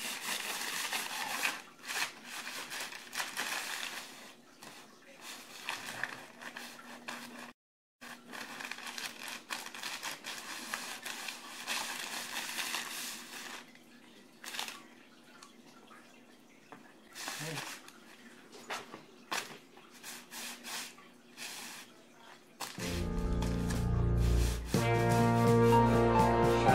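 Paper towel and plastic bag wiping and rubbing across vinyl floor tiles, an uneven rustling and crinkling that thins out after the first half. Music comes in near the end.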